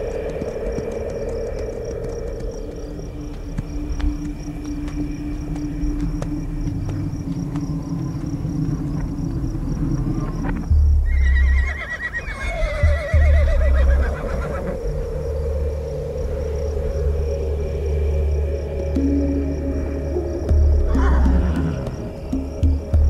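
Documentary music of sustained low notes; about halfway in, a Przewalski's horse gives a long, wavering whinny lasting about three seconds, over a heavy low rumble. A shorter falling call comes near the end.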